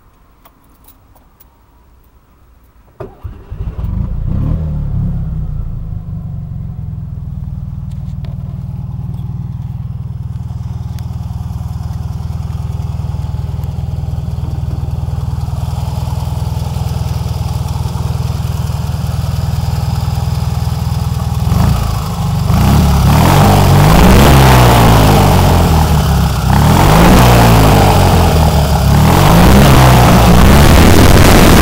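Tuned Fiat 500 Abarth 595's air-cooled two-cylinder engine starting about three seconds in and settling into a steady idle. From about two-thirds of the way through it is revved up and down repeatedly and sounds louder.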